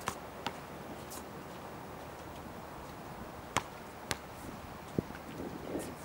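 A basketball bouncing on an outdoor asphalt court: five short, sharp smacks at uneven intervals, two close together near the start and three in the second half. Under them is a steady outdoor hiss.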